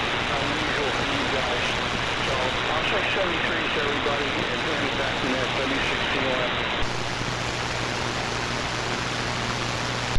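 Heavy static and band noise from an AM receiver on the 75-metre band, with a weak voice barely audible under it. About seven seconds in the hiss turns brighter and a low steady hum comes up.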